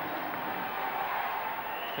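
Steady crowd noise in an indoor swimming arena: a continuous murmur of many voices with no single sound standing out.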